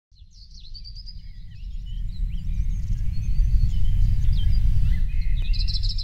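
Several birds chirping and whistling over a loud, steady low rumble that fades in and swells over the first few seconds.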